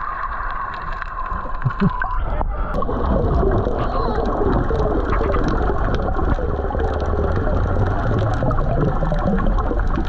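Underwater sound from an action camera just below the sea surface: muffled water noise full of bubbling and gurgling, with scattered faint clicks. A steady whine runs for the first two seconds.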